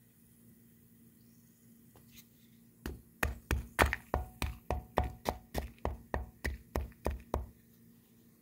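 A stick pounding lumps of old lime mortar soaking in white vinegar in a tub, crushing them so they break down faster. It gives about sixteen sharp knocks at roughly three a second, starting about three seconds in.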